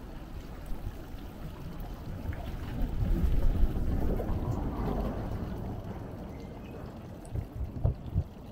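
Water from a stone fountain's spouts splashing into its basin, with wind rumbling on the microphone. A city bus passes close by, getting louder between about three and five seconds in and then fading.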